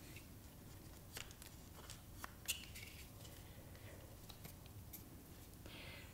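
Near silence with a few faint, short clicks and taps from hands handling a Steadicam Merlin 2 handheld stabilizer; the clearest click comes about two and a half seconds in.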